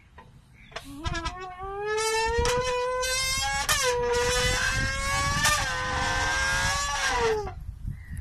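A man's voice buzzing through a tin can pinched in the middle, imitating an F1 racing car engine. It starts with a few stutters about a second in, then holds a long note that climbs slowly in pitch, drops briefly twice, and slides down and fades near the end.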